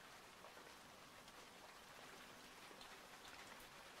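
Near silence: only a faint steady hiss.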